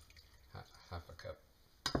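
A wooden spoon knocks sharply once against a stainless steel saucepan near the end as stirring begins. Before it there is only faint soft handling.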